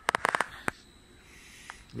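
Plastic packaging crackling as a telescope finderscope is lifted out of its box: a quick cluster of sharp clicks, then a single click shortly after.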